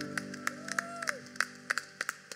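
The worship band's final chord ringing out and fading away. Scattered hand claps from the congregation begin over it.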